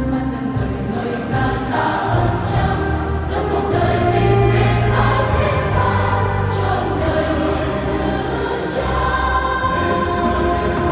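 A large youth church choir singing a Vietnamese Catholic hymn in sustained chords, accompanied by an electronic keyboard whose held low notes run underneath.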